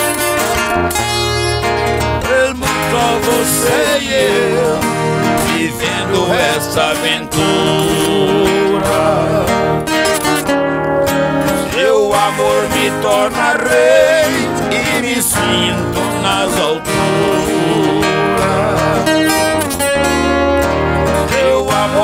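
Viola caipira and acoustic guitar playing together in the rural Brazilian moda de viola style, a continuous plucked and strummed duet.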